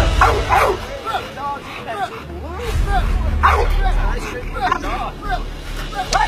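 Pit bull barking over and over in short, sharp calls at a man in a bite suit approaching the car it is guarding, with people's voices in the background.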